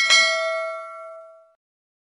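A bell-notification sound effect: a single bright bell ding that starts sharply and rings out, fading away within about a second and a half.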